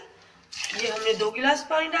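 Water poured from a glass into an aluminium pressure cooker of rice and peas, splashing in under a woman's counting voice.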